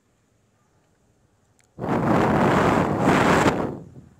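A gust of storm wind buffeting the microphone: a sudden loud rush of noise starts about two seconds in, lasts about two seconds and dies away just before the end.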